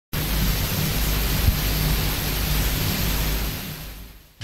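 A steady, loud rushing hiss with a low rumble under it, fading away in the last half second.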